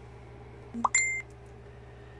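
A short electronic beep about a second in: one steady high tone lasting about a quarter of a second, just after a brief rising chirp. A low steady hum runs underneath.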